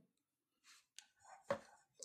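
A pause between spoken sentences: near quiet with a faint breath-like rustle and two small clicks, one about a second in and a sharper one half a second later.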